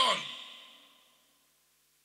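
The end of a man's spoken phrase, its echo in a large hall fading out within the first second, then silence.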